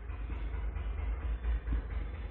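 A marker pen scratching across a whiteboard as an arrow is drawn, over a steady low rumble of background noise.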